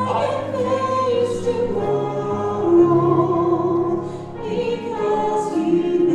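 A woman singing a slow song through a microphone, holding long notes with vibrato.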